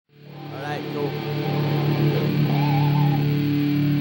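Live band's amplified guitar fading in over the first couple of seconds and holding a steady low drone, with a few voices calling out over it.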